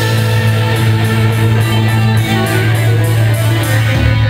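Live heavy metal band playing loud, with distorted electric guitar and bass to the fore over the drums.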